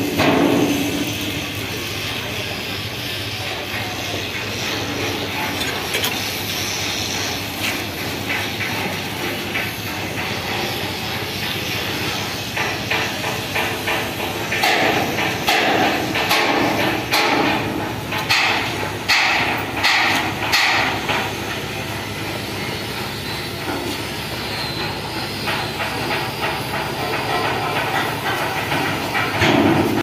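Dockyard work sounds: a steady background noise, with a run of sharp hammer knocks from about 12 to 21 seconds in.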